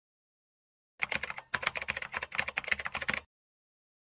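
A rapid run of clicks like keyboard typing, about ten a second and lasting a little over two seconds. It starts about a second in, with dead silence before and after.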